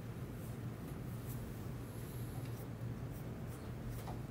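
Quiet room tone: a steady low hum with a few faint, light clicks or taps scattered through it.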